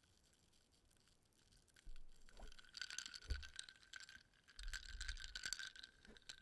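Glass mug of iced sparkling water handled close to the microphone. From about two seconds in there is a soft crackle of fizzing and light clinks of ice against the glass, with a few low thumps from handling.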